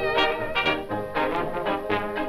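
Late-1920s dance band playing an instrumental passage of a foxtrot song, with brass carrying the melody, on an old recording with a dull top end.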